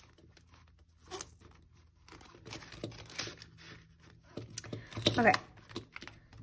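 Paper banknotes rustling and a clear plastic cash envelope crinkling as bills are handled and slipped inside, in a few short bursts.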